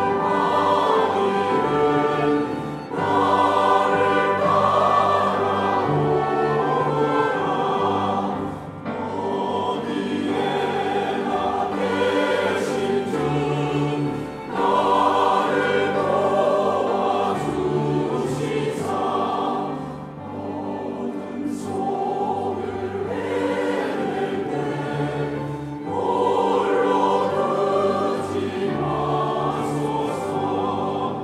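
A large mixed church choir singing a Korean hymn with orchestral accompaniment, in long phrases with short breaks between them.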